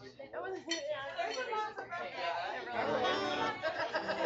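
Bar-room chatter, with several voices talking over each other and glasses and dishes clinking, and some guitar playing underneath.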